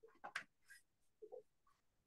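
Faint scratching of a pastel stick stroked across paper, a few short strokes in the first second.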